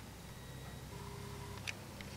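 Faint low hum of room tone, with a faint, brief whine about a second in from the camcorder's zoom motor, followed by a small click.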